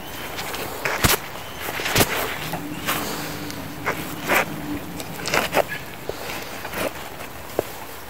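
Steel shovel blade scraping sticky wet clay off the sole of a boot: about half a dozen short, sharp scrapes and knocks spread over several seconds, with clay clumps coming away.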